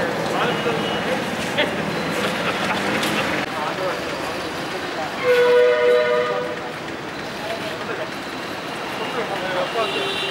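A horn sounds once, a steady pitched blast of about a second near the middle, the loudest thing heard, over a background of voices and forecourt noise.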